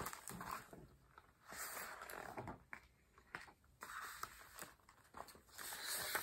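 Hardcover picture book's pages being handled and turned: a few soft paper rustles and swishes.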